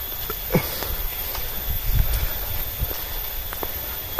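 Footsteps of a person walking on a dirt footpath covered in dry bamboo leaves: an uneven run of soft steps and bumps, the heaviest about two seconds in.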